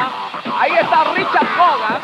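Speech: voices talking, rising and falling in pitch.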